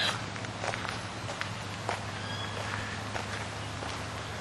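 Footsteps of a person walking down onto a gravel garden path, a soft step every half second or so.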